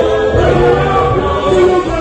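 A gospel choir of men and women singing together through microphones, holding long notes, over a sustained low bass accompaniment.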